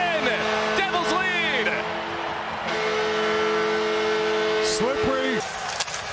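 Arena goal horn sounding in long steady chords over a cheering crowd, celebrating a home goal. The chord changes about halfway through, and the horn cuts off abruptly near the end, leaving crowd noise.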